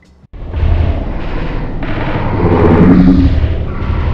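A sudden, very loud blast of noise with a heavy low rumble cuts in about a third of a second in and holds, with a pitched tone swelling out of it past the middle.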